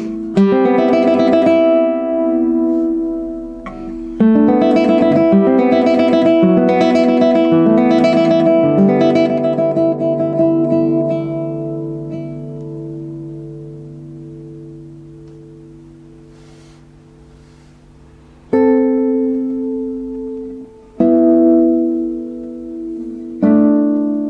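Classical guitar by Gregory Byers played solo: fast runs of plucked notes for the first nine seconds or so, then a low bass note left to ring and fade for several seconds. Three separate chords are then struck, each left to ring.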